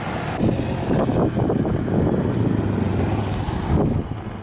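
ATV engine running steadily.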